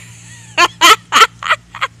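A person laughing in a quick run of five short pulses, the last two weaker.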